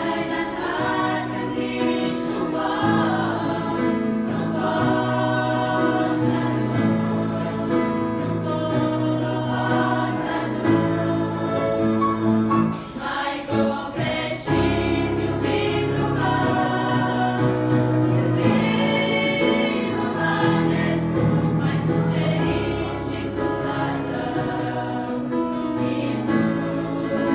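A choir of girls and young women singing a Christian song together, with sustained low notes underneath.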